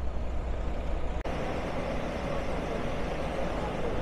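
Tour bus engine idling: a steady low rumble with a noisy wash above it, cutting out for an instant about a second in.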